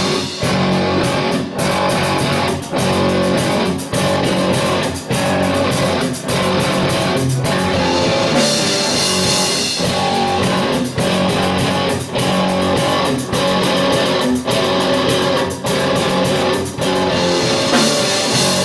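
Live rock band playing an instrumental passage on electric guitar, electric bass and drum kit. The riff breaks off briefly about once a second. A cymbal wash swells about halfway through.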